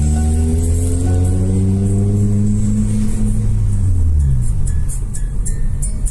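Car engine heard from inside the cabin, pulling steadily higher in pitch as the car accelerates. It drops back after a gear change about four seconds in, then starts rising again, with music playing over it.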